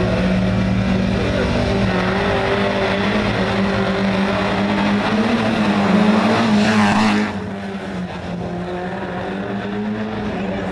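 Peugeot 205 1.9 GTI rally car's four-cylinder engine revving hard, its pitch rising and falling, as it approaches and passes close by, loudest about seven seconds in, then dropping off suddenly to a quieter steady drone.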